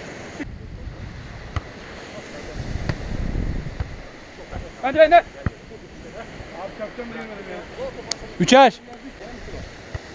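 Wind buffeting the microphone, a low rumble that swells a few seconds in, over a steady outdoor hiss of wind and surf. Two short shouts from players come about five and eight and a half seconds in.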